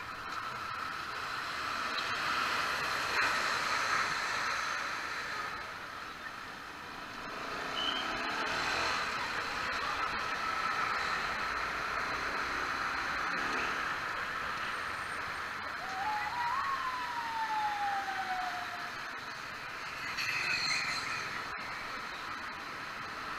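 Motorcycle riding on a wet road in traffic: steady engine, wind and tyre noise. About three-quarters of the way through, a whine rises briefly, then falls in pitch over about two seconds.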